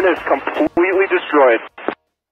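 A voice speaking over a radio link, thin and narrow in range, calling the balloon shootdown a good kill; it stops abruptly near the end.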